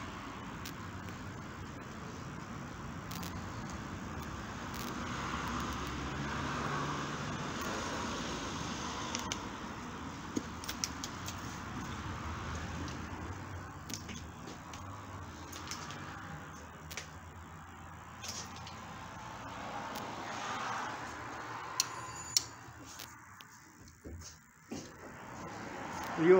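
Steady background noise and the rustle of a hand-held phone carried at walking pace, with a few sharp clicks and knocks near the end.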